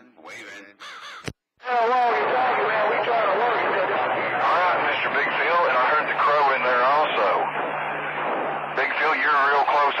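CB radio receiving a distant skip signal on channel 28: a man crowing like a rooster over the air, heard through the receiver with wavering, garbled voice sound. It starts about two seconds in, after a click and a brief dropout as the set switches from transmit to receive.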